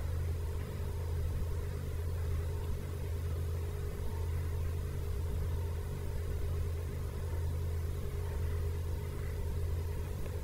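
A steady low hum, with a few faint steady tones above it.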